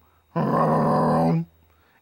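An American bullfrog gives one deep, drawn-out call about a second long, starting about a third of a second in.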